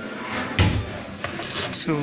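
A single dull knock of an object against a hard surface about half a second in, over a steady background hiss, with a voice starting near the end.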